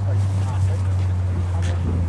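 A car engine idling with a steady low drone.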